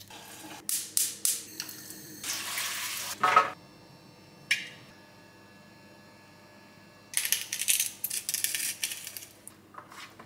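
Kitchen food-prep sounds of carrots being peeled and handled: a few quick scraping strokes of a vegetable peeler on a carrot, then carrots clattering and scraping in a metal roasting tin, with a busier run of crackly scraping about seven seconds in.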